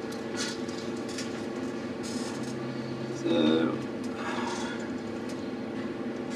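Meeting-room tone with a steady hum, and a brief low murmur of a voice about three seconds in.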